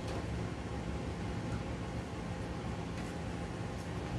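Steady low room hum, with a few faint clicks and light knocks as hard drives in plastic caddies are handled and locked into the bays of a metal server chassis.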